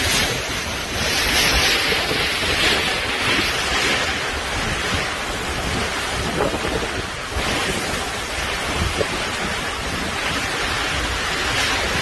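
Super typhoon winds blowing hard through heavy rain, rising and falling in gusts, with the wind buffeting the microphone.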